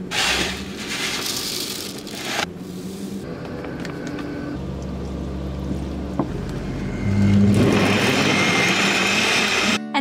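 Smoothie ingredients poured into a personal blender's plastic cup: a rush of protein powder at the start, then milk. About seven seconds in, a louder steady blender motor runs for nearly three seconds and stops abruptly. Background music plays underneath.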